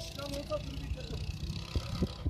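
Go-kart running along the track: a steady low engine and road rumble with a hiss above it that stops shortly before the end. A voice is heard briefly at the start.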